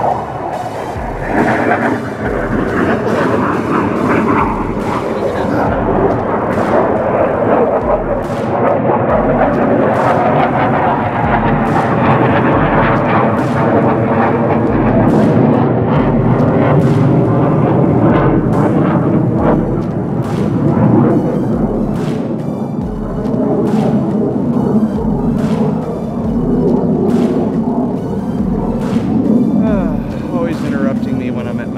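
Jet aircraft passing overhead: a steady rushing noise that builds to its loudest around the middle and slowly eases off toward the end.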